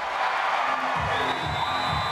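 Arena crowd cheering, mixed with music; a short musical transition sting joins from about a second in.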